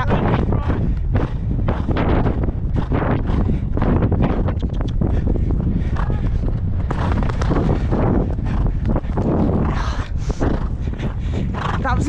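Wind rushing over the microphone of a rider's head camera as a horse canters on a sand track, with a steady loud rumble and a dense run of the horse's hoofbeats and tack noise throughout.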